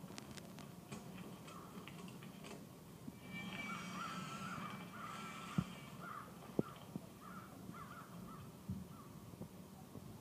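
Film soundtrack played faintly over a room's speakers: a run of short repeated calls for about five seconds in the middle, with a few light knocks.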